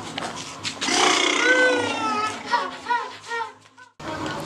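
A long pitched, gliding sound with an echo effect, its repeats fading quickly and cutting off sharply just before the end.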